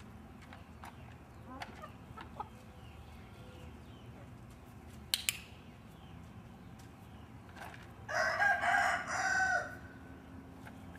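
A rooster crowing near the end, one long crow of about a second and a half, the loudest sound here, over soft clucking from hens earlier on. A sharp double click comes about five seconds in.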